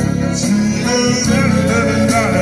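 A male street singer singing into a microphone, amplified through a PA speaker, over instrumental backing music.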